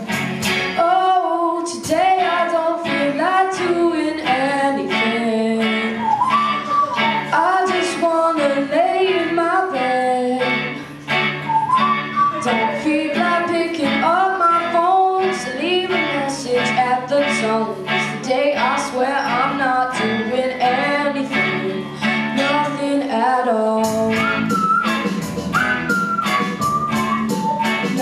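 Small live band playing a song: a young male lead vocal over electric bass, electric guitar and a drum kit keeping a steady beat. The drums get busier, with brighter cymbals, about four seconds before the end.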